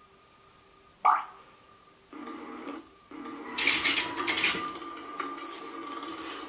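The small social robot Shybo playing back a soundtrack through its speaker in response to a yellow colour card. There is a short sharp sound about a second in, then from about two seconds a steady, low recorded sound, with scratchy clattering noise on top from about three and a half seconds.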